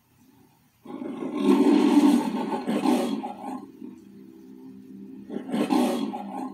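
The MGM logo's lion roar played through a TV: a long roar starting about a second in, then a second, shorter roar near the end. A low steady tone carries on underneath between them.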